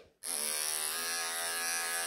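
Electric pet hair clippers switching on a quarter of a second in and running with a steady buzz.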